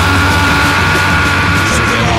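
Loud punk rock band music, with a high note held until near the end.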